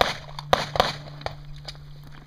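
A handgun being unloaded and shown clear after a course of fire: a few sharp metallic clicks and clacks as the magazine comes out and the slide is worked, over a steady low hum.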